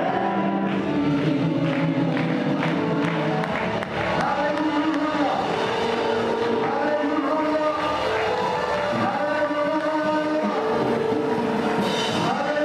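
Church congregation singing together over music, with sustained sung notes held and changing pitch in steps.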